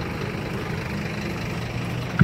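An engine idling, a steady low even hum.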